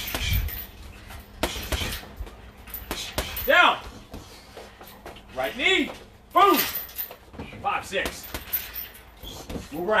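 A man's short, sharp exertion shouts while throwing a punching combination, about four of them, each rising and falling in pitch. Dull thuds come in between them.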